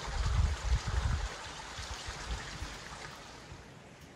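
Steady rushing of a small mountain creek, with low wind buffets on the microphone through the first second or so; the rush fades down near the end.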